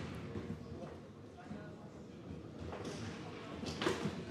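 Table football being played on a Garlando table: the ball knocking against the rod figures and the rods clacking, in scattered light knocks with one sharper knock near the end.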